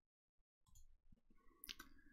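Near silence, with a few faint clicks in the second half.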